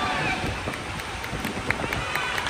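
Sports-hall crowd noise and voices with dull thumps of bodies landing on the mat during a Vovinam fight routine, and a sharp clap near the end.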